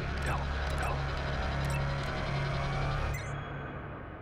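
Buttons on a small handheld keypad pressed one after another, a handful of sharp clicks, over a low, tense music drone that cuts off abruptly about three seconds in.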